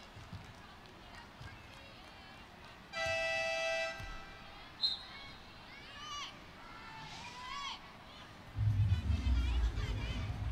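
Arena game horn sounding once, a steady buzzer tone for about a second, during a stoppage for a foul in wheelchair basketball. A short high whistle chirp follows, then brief calls on court, and a loud low rumble starts near the end.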